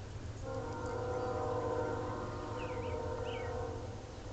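A steady chord of several tones held for about three and a half seconds. It starts and stops abruptly, with birds chirping faintly above it.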